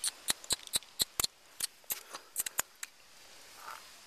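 A run of sharp, light clicks, about four a second and uneven, that stops about three seconds in.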